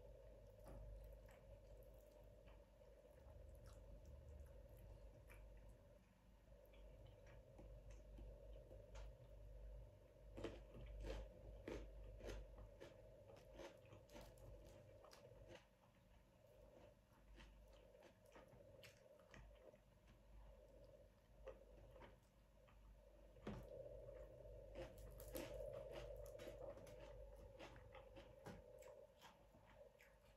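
Faint close-up chewing and crunching of food, with scattered small mouth clicks that are busiest about a third of the way in and again near the end, over a steady faint hum.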